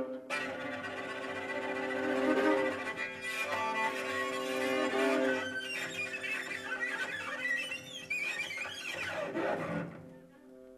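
Live ensemble music led by bowed strings (cellos, violas and double basses), holding long sustained notes for the first half, then turning busier with wavering higher lines over the second half.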